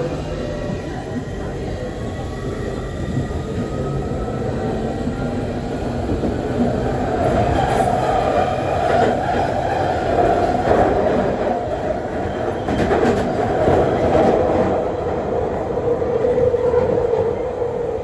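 London Underground Central line train heard from inside the carriage as it pulls away. A rising whine comes from the traction motors as it gathers speed; then the running noise grows louder, with clicks from the wheels and a steady tone in the later seconds.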